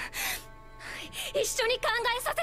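Anime dialogue in Japanese: a sharp gasping breath, then a young woman's tearful voice with a quivering, wavering pitch, over soft background music.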